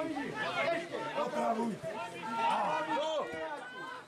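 Several voices talking over one another close to the microphone, the chatter of people at the pitch side during play.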